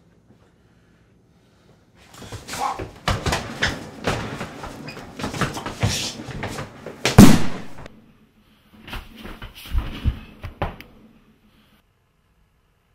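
Two men grappling in a struggle: a run of thuds, knocks and scuffling from about two seconds in, with one much louder bang a little past the middle, then a few more thuds near the end.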